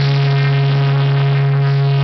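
Live rock band holding one loud, sustained chord with the drums stopped, the low note ringing steadily without change.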